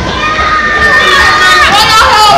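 A person's high-pitched excited shriek, held on one note for about a second and a half, then sliding down in pitch near the end, over a lively, noisy room.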